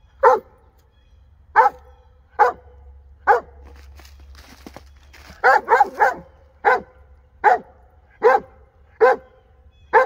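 A Weimaraner barking in short, sharp single barks, roughly one a second with a quick run of three about halfway through. He has his nose at the end of a drainage pipe and is barking at small animals hiding inside it.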